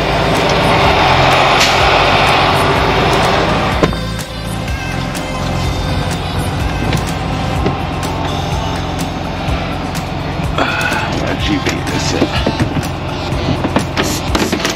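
Freightliner Cascadia semi truck's diesel engine idling, heard inside the cab. Over the first four seconds a loud rushing hiss sounds, then cuts off suddenly with a click.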